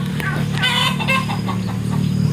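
Chickens clucking, with a quick run of short calls about half a second to a second in, over a steady low hum.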